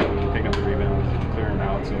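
A man speaking, with a steady low hum underneath.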